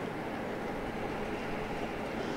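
Steady background rumble with a faint low hum, unchanging throughout: the constant noise floor of the venue's microphone and sound system, with no speech.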